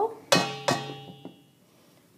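Two knocks of a measuring cup against a stainless steel mixing bowl, emptying the last of the flour. The bowl rings with a clear metallic tone that fades away over about a second.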